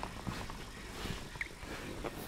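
Nine-day-old bull terrier puppy making a few short squeaks as it crawls, with small scuffling sounds.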